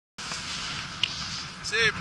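Steady rushing hiss of wind on the microphone, with one sharp click about a second in, then a man's voice near the end.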